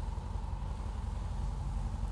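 A steady low background rumble.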